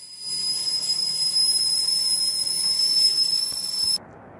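Stainless stovetop kettle whistling at the boil: one steady high whistle over a hiss of steam, starting a moment in.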